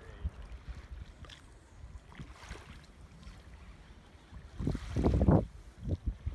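Wind rumbling on the microphone, uneven and gusty, with a louder burst about five seconds in.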